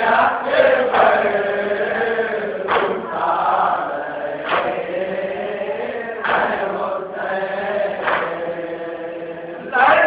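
Group of men chanting an Urdu nauha (Shia lament) in unison, with long, wavering lines. Sharp slaps land about every two seconds in time with the chant, the beat of matam (chest-beating). The voices swell louder just before the end.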